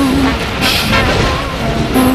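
Cinematic intro soundtrack of a rap music video: a held low tone that wavers slightly in pitch over a low rumble, with a short burst of hiss about half a second in.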